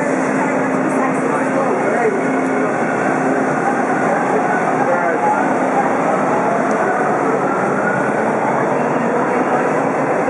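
TTC Bombardier T1 subway train pulling out of an underground station: steady loud running and wheel-on-rail noise with a faint rising whine from its traction motors as it picks up speed.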